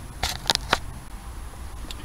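Three short sharp clicks about a quarter second apart, over a faint low rumble.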